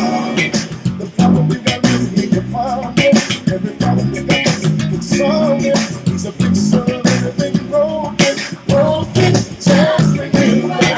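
Ken Smith Burner six-string electric bass played fingerstyle, a moving bass line over a gospel recording with drums and singing.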